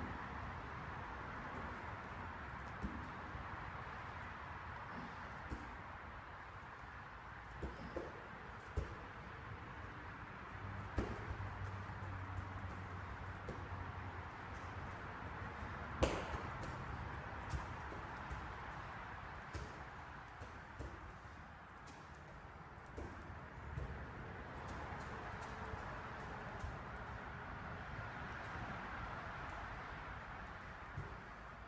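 Weight plates hanging from straps on a loaded yoke bar knocking and clanking faintly now and then as the yoke is carried, over steady room noise, with one louder thud about halfway through.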